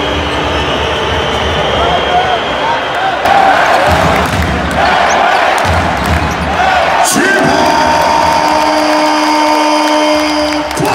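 Basketball arena crowd noise during live play: a packed crowd shouting over the game, with a ball bouncing on the hardwood court. A steady held tone starts about seven seconds in and carries on over the crowd.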